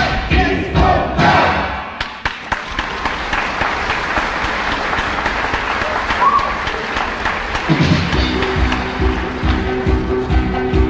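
The band ends a phrase, and from about two seconds in a theatre audience applauds and cheers. Near the end the orchestra comes back in with held chords.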